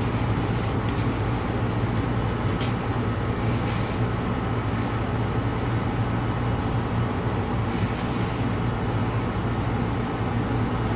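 A steady low hum with an even hiss, unchanging throughout.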